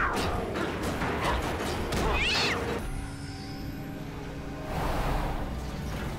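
Animated-film fight soundtrack: music over a run of sharp hits and rushes, with a short high, rising, cat-like screech about two seconds in. From about three seconds the music settles into sustained held tones.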